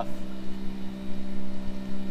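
A steady low mechanical hum holding one pitch, with wind rumbling unevenly on the microphone.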